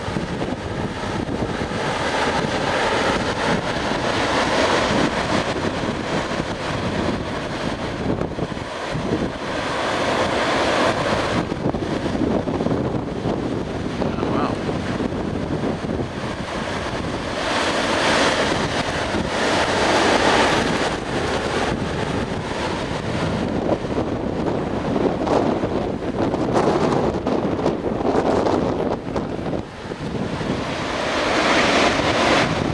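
Gusty wind blowing on the microphone over the sound of surf breaking on the beach, the noise rising and falling in uneven swells.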